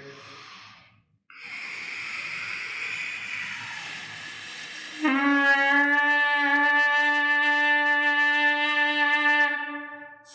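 Trumpet leadpipe buzz: air blown through a trumpet mouthpiece held to the leadpipe, first a breathy rush for a few seconds, then the lips start buzzing and a steady, unwavering note sounds for about four seconds before fading out.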